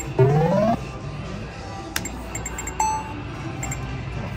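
Video poker machine sound effects: a short rising electronic tone just after the start as the winning pair of kings is paid, a sharp click about two seconds in and a brief beep just before three seconds. Faint electronic chimes of other machines and a low hum run underneath.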